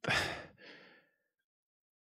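A man sighing: a breathy exhale in the first half-second, trailing into a fainter second breath that ends about a second in.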